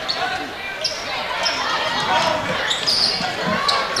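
Crowd noise in a packed school gym, with many voices and a rowdy student section, over a basketball being dribbled on the hardwood court. There are a few short high squeaks.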